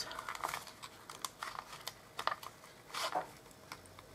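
Small kraft-paper gift box handled by fingers: faint paper rustling with scattered light clicks and taps as it is turned over and pressed.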